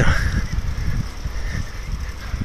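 Wind noise on the microphone with bicycle tyre noise on a paved path, a steady low-pitched rush while riding.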